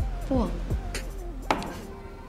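A drinking glass set down on a table, giving a single sharp knock about one and a half seconds in, over a short spoken line and soft background music.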